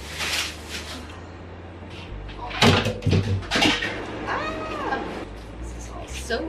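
Plastic bottles, bags and other household clutter rustle and knock as they are handled and moved, with several sharp knocks. About four seconds in comes one drawn-out call that rises and falls in pitch: a cat meowing.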